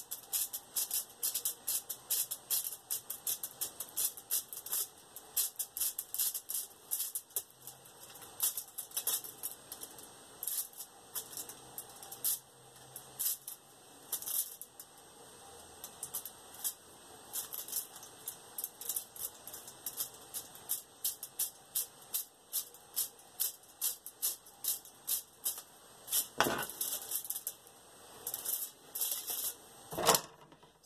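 Aluminium foil crackling in quick, irregular ticks as a stylus is pressed again and again into polymer clay resting on it, punching a ring of small holes. One duller knock comes near the end.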